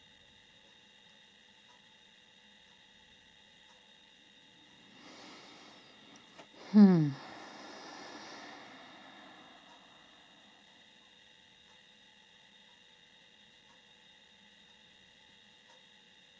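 Quiet room tone with a faint steady hum. About five seconds in a woman breathes in, then gives one short voiced sigh that falls in pitch and trails off in a breathy exhale.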